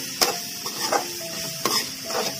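Diced carrots frying in oil in a metal pan, sizzling steadily, while a spatula stirs them and scrapes the pan in sharp strokes about once a second.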